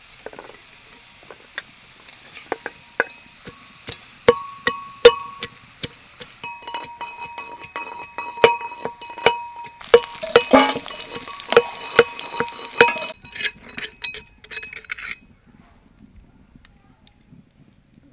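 A steel spoon repeatedly clinks and scrapes against a metal pan while potatoes are stirred in hot oil. Some strikes ring briefly, and the food sizzles underneath. The clatter stops about three seconds before the end.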